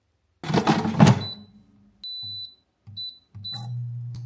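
A loud yawn, then a Gourmia digital air fryer's control panel giving four short high beeps, roughly a second apart, as it is set to preheat. A low hum comes in with the later beeps and runs steadily near the end.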